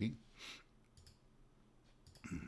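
Faint clicks of a computer mouse, a few in all, the first and loudest about half a second in.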